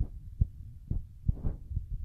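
Irregular low thumps over a rumble, about two a second, typical of a handheld phone microphone being jostled as it is swept over the plants.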